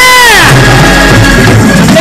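Loud, amplified church worship music: a man's voice holds a note into the microphone that drops away about half a second in, over a steady held instrumental tone and lower backing.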